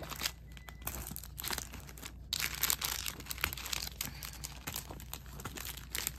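Plastic-bagged sticker packs crinkling and rustling as they are handled and shuffled, in an irregular run of crackles that is busiest from about two seconds in.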